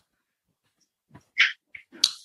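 A few short, high-pitched animal cries, the loudest about one and a half seconds in and another near the end.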